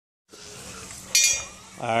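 A brief, sharp metal-on-metal clink about a second in, over a faint steady hiss.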